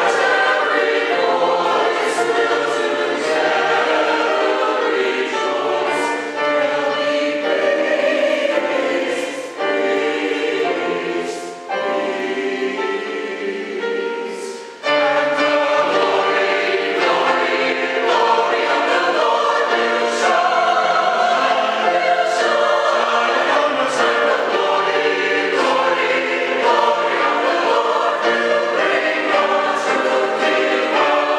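Mixed church choir singing an anthem in full voice, phrase after phrase, with a short break about halfway through before the whole choir comes back in.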